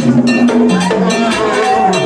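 Vodou ceremonial music: a metal bell struck in a steady rhythm over percussion, with singers holding long notes that step up and down in pitch.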